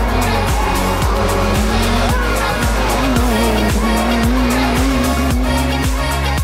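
Nissan GT-R race car's engine pulling hard through a hairpin bend, its note climbing a little about halfway, under an electronic music track with a steady beat.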